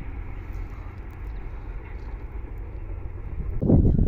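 Steady low outdoor rumble beside the railway tracks, with no distinct event in it. Near the end it cuts abruptly to a louder, deeper rumble.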